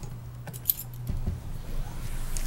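A few light clicks and a brief rattle, with one sharp click a little under a second in, over a steady low hum of the room's sound system.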